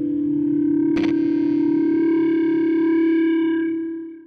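Closing music: a held, distorted electric guitar note with a wavering effect, struck again about a second in, then ringing on and fading out near the end.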